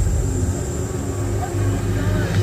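Show soundtrack playing a low, steady rumble with faint held tones underneath.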